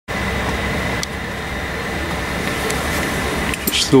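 Steady background hum and hiss inside a shop, with a low rumble and a thin steady high tone, and a few faint clicks. A man's voice starts right at the end.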